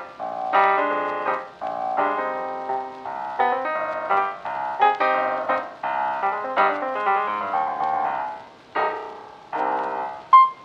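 Background piano music: a run of struck notes and chords, each fading after it is played.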